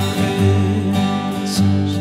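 Acoustic guitar strummed, its chords ringing in the gap between sung lines of a worship song, with a fresh strum about one and a half seconds in.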